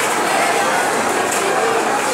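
Crowd chatter: many people talking at once in a steady babble, with no single voice standing out.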